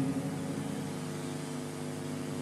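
A soft, sustained chord from a pop-ballad accompaniment: several steady notes held quietly, with no singing over them.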